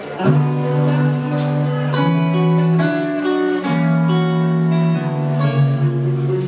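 Live band playing an instrumental passage led by an Ibanez electric guitar, its notes changing every second or so. A cymbal crash comes about a second and a half in and again near four seconds.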